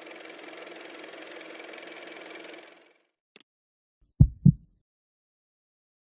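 Closing logo sound design: a steady engine-like hum with a faint high tone fades out just before halfway, then a single click, then two deep thumps in quick succession, the loudest sounds.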